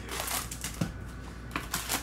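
Foil-wrapped Panini Donruss Optic card packs rustling and crinkling as they are handled and lifted out of a cardboard hobby box, with a few light taps and clicks.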